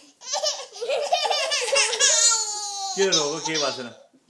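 A toddler's high-pitched vocalising that becomes one long falling wail, the start of crying after being grabbed by an older child. About three seconds in, a lower, rough voice falls in pitch.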